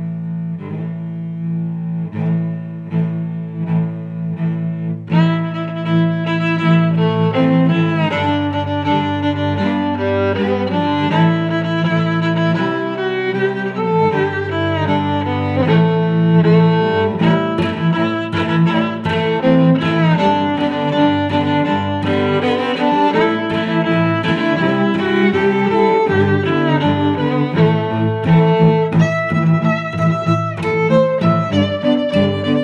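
Background music: sustained low string notes, growing fuller about five seconds in as more instruments join with sharper, rhythmic attacks.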